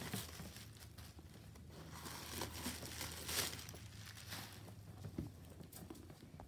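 Rustling and crinkling of a Michael Kors shoulder bag and its packaging wrap being handled, irregular, with a few small clicks, loudest a little past the middle.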